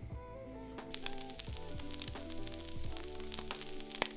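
Shredded pork carnitas sizzling and crackling on a hot griddle as they crisp up, the sizzle coming in about a second in, over soft background music.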